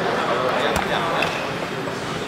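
People talking in a large gym hall, with one sharp knock about three-quarters of a second in.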